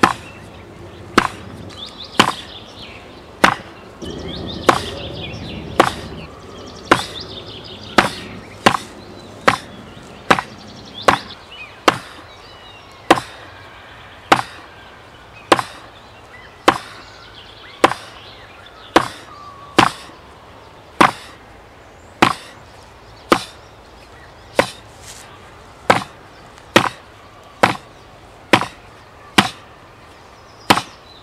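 Fist strikes on a portable wooden makiwara striking board strapped to a tree: a steady rhythm of sharp knocks, louder and softer ones alternating, roughly a strike every half second or so.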